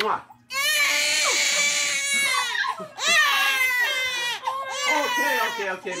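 Infant crying loudly in long, wavering wails, with short breaks for breath between them, starting about half a second in.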